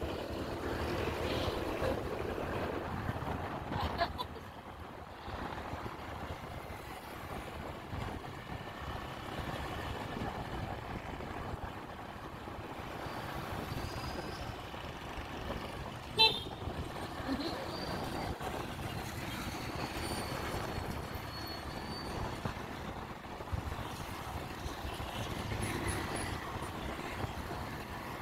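Motorcycle riding through traffic: steady engine and wind noise at the rider's helmet camera, with a short horn toot about sixteen seconds in.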